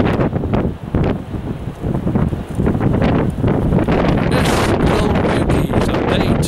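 Strong wind blowing across the camera's microphone: a loud, gusting rumble that swells and dips.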